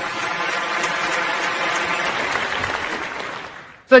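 Audience applauding in a large hall, a steady clatter of clapping that fades away near the end.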